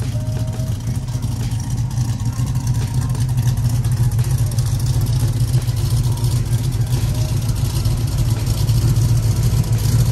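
LS V8 in a swapped OBS Chevy pickup idling steadily. The low idle gets slightly louder toward the end.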